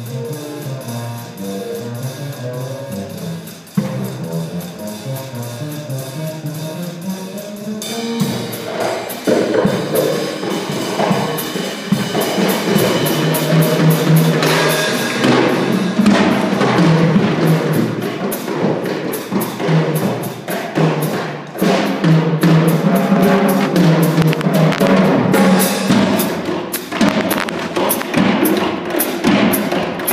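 Small jazz combo playing live: for the first eight seconds or so a plucked upright bass leads alone and more quietly, then the drum kit and the rest of the band come in suddenly louder, with the drums prominent to the end.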